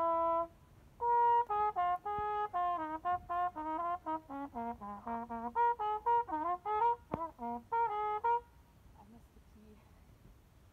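Solo trumpet playing a band part: a held note, a brief pause, then a run of many short, separated notes that moves up and down in pitch, stopping about eight and a half seconds in.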